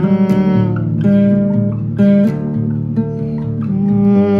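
Acoustic guitar in open tuning playing an instrumental passage, plucked notes and chords ringing out about once a second. A held hummed note slides down and fades in the first second.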